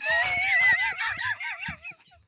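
A man's high-pitched, squealing laugh held for nearly two seconds, its pitch wobbling up and down several times a second before it fades near the end, with softer chuckling underneath.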